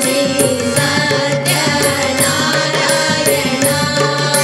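Live Hindu devotional bhajan: voices singing a chant-like melody over a harmonium's held notes, with tabla and dholak hand drums keeping a steady rhythm.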